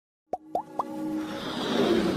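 Logo intro sound effect: three quick blips about a quarter second apart, each gliding upward in pitch, then held synth tones and a whoosh that swell louder.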